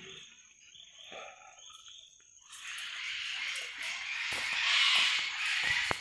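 Forest wildlife chorus: a high, hissing buzz swells up about halfway through, peaks and eases off again, over a quieter start with faint calls.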